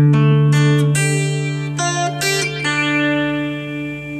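Acoustic guitar in standard tuning ringing a D minor chord, the low D sounding throughout. The pinky adds a note and pulls off several times, so the upper notes change over the steady chord.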